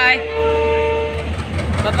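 Indian Railways train horn holding one long steady note that cuts off a little over a second in. A low rumble then grows louder as the train gets ready to move off.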